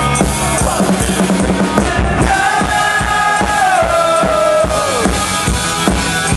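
Live rock band playing loudly, heard from the crowd. The drums keep a steady beat, and a long note is held from about two seconds in and slides down shortly before the end.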